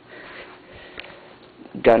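A dog sniffing in quick breaths for about half a second, then a light click about a second in.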